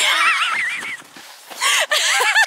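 A woman's high-pitched, wavering shriek of laughter for about a second, then another loud burst of laughter near the end: a startled laugh after nearly slipping.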